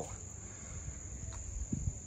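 Crickets trilling, a steady unbroken high-pitched tone, over a low background rumble.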